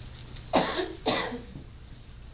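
A woman coughing twice, about half a second apart, starting about half a second in.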